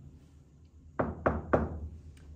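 Three quick knocks on a whiteboard, about a quarter of a second apart, starting about a second in.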